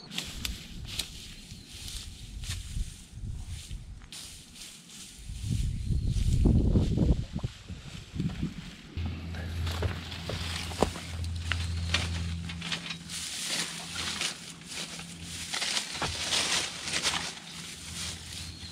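Dry straw mulch rustling and crackling as it is handled by gloved hands, with knocks and bumps as the camera is set down near the ground. A steady low hum runs underneath from about halfway through.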